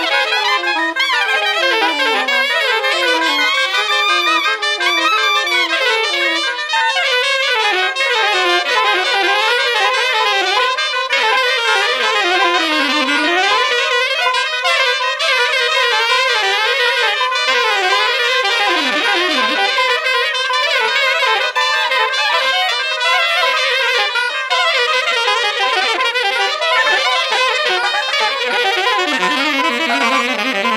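Saxophone quartet playing jazz: several saxophones at once in dense, fast-moving, interweaving lines, without a break.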